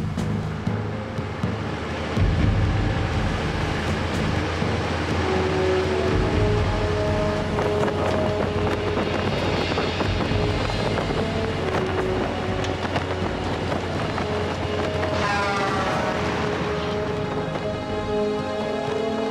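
Film score music with held notes over the low rumble of a heavy truck driving along a road, with wind and road noise as it passes.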